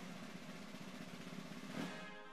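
A roll on drums lasting about two seconds, a dense rumbling wash without clear notes, set between brass phrases of orchestral fanfare-style theme music. It starts and stops abruptly.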